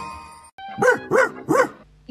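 A music jingle fades out, then three quick barks follow about a third of a second apart, each rising and then falling in pitch.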